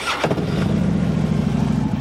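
2009 Harley-Davidson Road Glide's 96 cubic inch Twin Cam V-twin starting up through its Vance & Hines 2-into-1 exhaust: a sharp burst as it catches, then a steady, even-running engine note.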